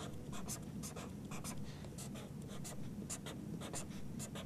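Marker pen drawing on paper: many short, faint strokes as a row of small boxes is drawn.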